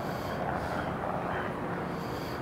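Steady low rumble and hiss of wind buffeting the microphone outdoors, with a faint wash of vehicle noise.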